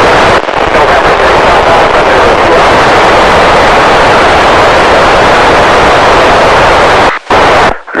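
Open FM static from an Icom ID-5100 receiving the TEVEL-5 satellite downlink between transmissions: a loud, even hiss with no signal on the channel. It briefly cuts to silence near the end as a carrier comes up, just before a voice starts.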